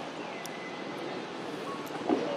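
Steady outdoor background hiss, even and unbroken, with a faint thin high whistle about half a second in and a brief faint tone near the end.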